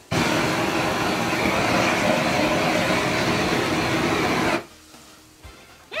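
Handheld butane kitchen blowtorch burning close to the microphone: a loud, steady rushing hiss that starts abruptly and cuts off after about four and a half seconds.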